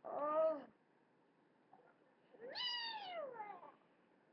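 Two meows: a short one at the start, then a longer one about two and a half seconds in that rises and then falls in pitch.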